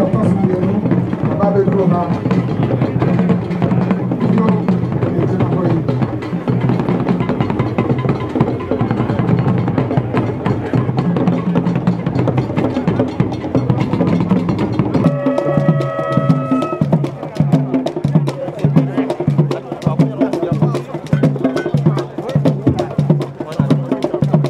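Drumming and percussion playing throughout with a dense rhythm. About fifteen seconds in it changes to a sparser, regular beat of about two strokes a second, with a brief held tone just after the change.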